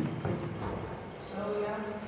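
Hoofbeats of a group of horses moving on the dirt footing of an indoor riding arena, opening with a sharp thump, with a voice calling in the second half.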